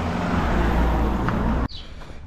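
A car driving past on the road: steady tyre and engine noise with a low rumble, cutting off suddenly near the end.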